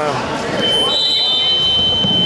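A steady, high-pitched electronic buzzer tone starts about half a second in and holds, with a second, slightly higher tone sounding alongside it for about a second, over voices in the hall.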